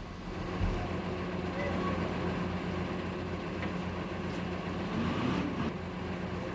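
Engines of armoured combat vehicles running with a steady, low, even drone.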